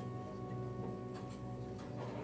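Symphonic wind band playing sustained held chords, with a light tick about every half second or so.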